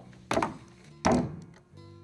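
Two dull thunks on a tabletop, about a third of a second and about a second in, as a clothes iron is set down on the table, over faint background music.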